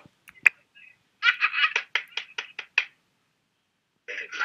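A man laughing in a quick string of about ten short bursts, after a sharp click.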